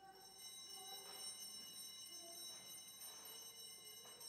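Altar bells rung at the consecration of the chalice, marking its elevation: a bright, many-toned ring that starts suddenly and keeps sounding, renewed by light strokes every second or so.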